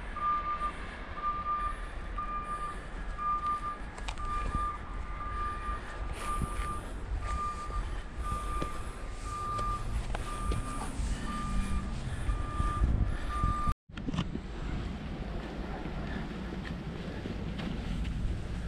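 Repeated electronic beeping at one pitch, about one beep a second, over a steady low rumble. The beeping cuts off abruptly about 14 seconds in, with a brief dropout in the sound.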